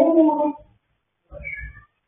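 A woman's voice holding a drawn-out, meow-like sung note that stops about half a second in. A short, fainter sound with a low thump follows near the end.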